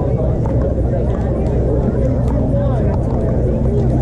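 Pickleball paddles striking plastic balls on several courts, a scattering of sharp pops, over people talking and a steady low rumble.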